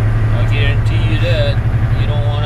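Semi truck's diesel engine droning in the cab with a steady low hum while the truck pulls up a long grade.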